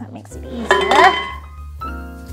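Metal table frame rails clanking and clinking against each other as they are picked up and handled, in one short clatter near the start, over background music.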